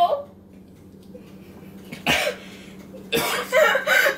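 A person's cough about two seconds in, then a loud drawn-out vocal outburst near the end: a reaction to a foul-tasting mouthful.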